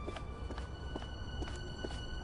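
Footsteps at about two a second over held notes of background music, one note stepping up in pitch about half a second in.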